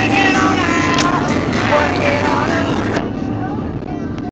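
Steady low drone of a moving car, heard inside the cabin, with a pitched voice over it for the first two and a half seconds.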